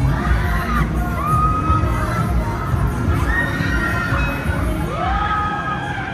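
Riders screaming on a spinning Huss Flipper fairground ride: several long held screams that rise and fall, over fairground music with heavy bass.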